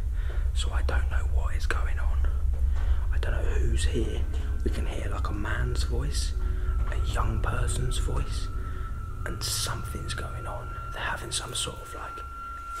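A man whispering close to the microphone, over a steady low hum. A thin, steady high tone comes in about four and a half seconds in and holds.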